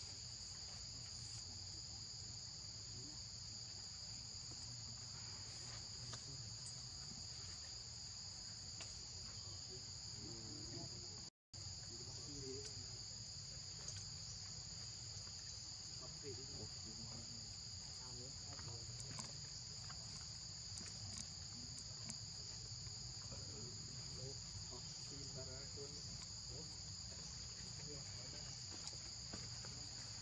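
Steady, high-pitched chorus of insects (crickets or cicadas) droning without a break, except for a sudden split-second drop to silence about eleven seconds in.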